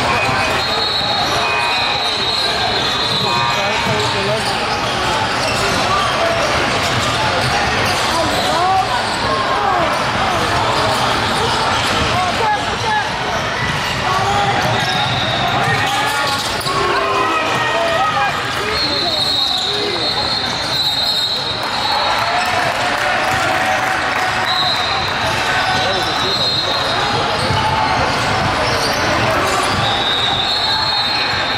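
A live basketball game in a large gym: a basketball dribbled and bouncing on the hardwood court, with the voices of players and spectators throughout.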